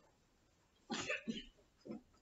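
A quiet, short cough from a person about a second into an otherwise hushed moment, with a faint small sound near the end.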